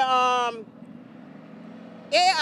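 A woman's voice makes one held, wordless vocal sound of about half a second, falling slightly in pitch, at the start. After it, only a low, steady traffic hum is heard.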